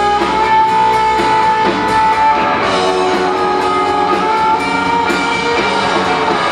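Live rock band playing an instrumental passage: electric guitars over electric bass and a drum kit, with a held guitar note ringing for about two seconds near the start.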